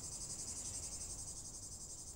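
A steady, high-pitched chorus of insects chirring with a fast, even pulse.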